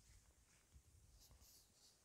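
Near silence, with a few faint, brief scratchy rustles a little over a second in.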